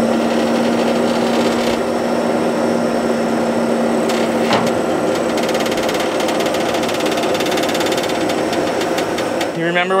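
Old hand-cranked corn sheller being turned, giving a fast, steady mechanical rattle, with an engine running underneath and a single sharp knock about halfway through.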